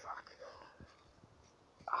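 Faint breathy sounds from a man, then a short, loud pained "ah" right at the end: his reaction to stinging nettles burning his hand.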